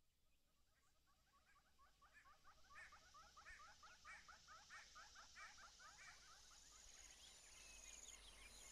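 Faint nature ambience fading in: a rapid series of repeated animal chirps that grows louder, with a high steady insect trill starting near the end.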